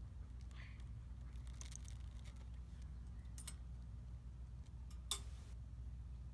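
Faint metallic clicks and rattles from a wire dog crate being handled, with one sharp click about five seconds in as its door latch is worked, over a steady low hum.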